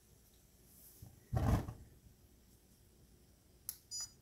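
Gas log burner lighting off its pilot: one short, low whoosh of igniting gas about a second in. Two short high beeps near the end.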